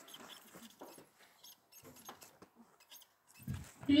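Faint rustling and light scattered clicks of thin Bible pages being handled, in a quiet room.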